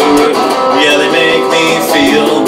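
Squier Stratocaster electric guitar strummed through a small practice amp, sounding several notes together as chords that change every half second or so.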